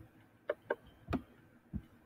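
A few short computer mouse clicks, about four in two seconds, as layer visibility eye icons are clicked on one after another.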